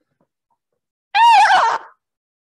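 A single loud, high-pitched vocal cry lasting under a second, starting about a second in, its pitch rising and then falling.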